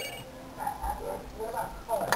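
Electronic call ringing from the iPod Touch's built-in speaker, a chord of steady high tones, cuts off just after the start as the call connects. Faint, wavering, voice-like sounds follow.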